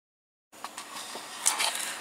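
About half a second of dead silence where the recording is cut, then faint room noise with a few soft clicks and small movement sounds.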